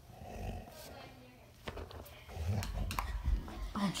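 A dog growling in play while tugging hard on a toy in a tug-of-war, with a few knocks and bumps from the tussle.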